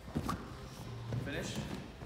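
A dull thump a split second in as a gymnast's hands come down on a padded crash mat during a back walkover, with voices in the gym around it.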